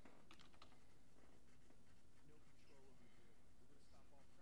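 Near silence, with a short run of faint computer keyboard clicks in the first second.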